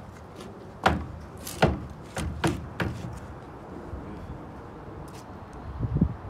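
Wooden pallet knocking against a trailer's wooden deck as it is shifted into place: about five sharp knocks between one and three seconds in, then one more thump near the end.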